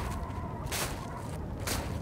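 Footsteps crunching in snow: two slow steps about a second apart, over a steady low background.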